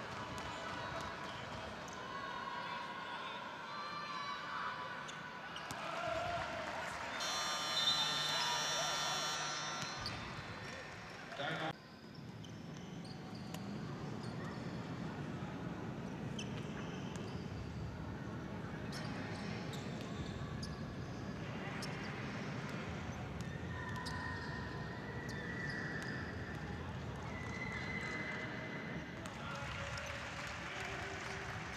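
A basketball bouncing on the court in a large, near-empty sports hall, among indistinct voices. A loud horn-like tone sounds about seven seconds in and lasts about two seconds.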